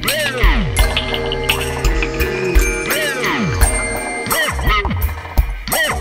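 Ambient experimental instrumental music: synthesizer tones swooping downward in pitch again and again over a steady drone, with scattered percussive hits.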